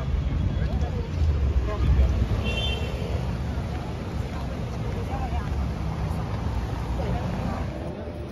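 City street ambience: traffic running past with a steady low rumble, and scattered voices of passers-by.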